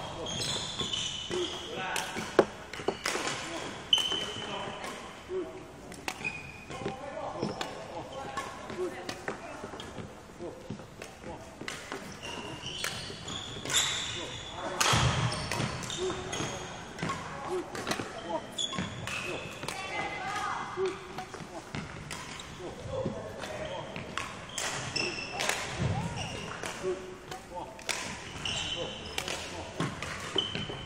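Sports shoes squeaking and feet thudding on a wooden court floor in a hall, in quick irregular bursts as a player moves through badminton footwork, with voices in the background.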